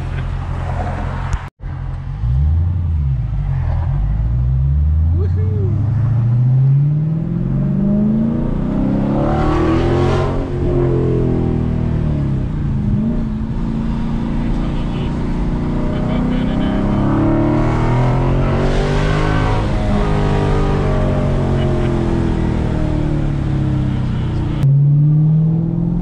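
Dodge Challenger Scat Pack's 392 (6.4-litre HEMI V8) with its resonators cut out, heard from inside the cabin: the engine pulls hard, its pitch climbing for several seconds, then drops as it comes off the throttle, and the same rise and fall happens a second time.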